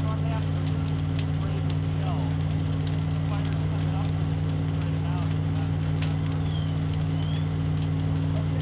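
A steady low engine hum runs throughout, with the crackle of a burning wooden building and faint distant voices.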